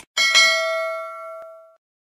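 Notification-bell chime sound effect from a subscribe animation: a short mouse click at the start, then a bright bell ding struck twice in quick succession, ringing out and fading over about a second and a half.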